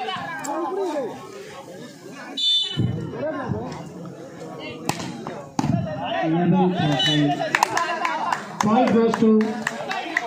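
Crowd of spectators talking and shouting over one another, with a short shrill whistle about two and a half seconds in.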